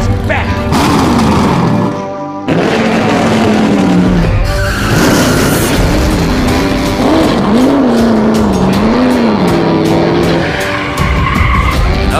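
Race-car engine sound effects from an app-controlled Lightning McQueen toy car, revving up and down several times, with tire skids, over music.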